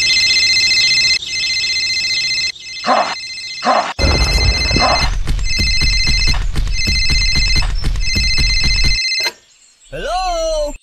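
Mobile phone ringtone sound effect: a repeating high electronic trill in rings about a second long, with a pause around the third second. It stops a little after nine seconds.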